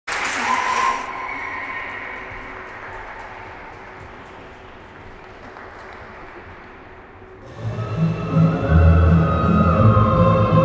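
Applause in an ice rink that fades away into the hall's quiet, with a few last claps, then the skaters' free dance music starts with heavy bass about seven and a half seconds in.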